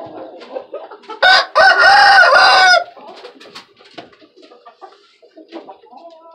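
A rooster crowing once, loud, starting about a second in and lasting about a second and a half: a short opening note followed by a longer wavering one.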